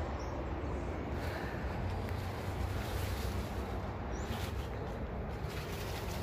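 Wind buffeting the phone's microphone, a steady low rumbling noise outdoors, with a couple of faint short high chirps.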